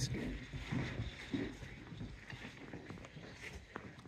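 Quiet room ambience with faint scattered voices and a few light clicks and footsteps.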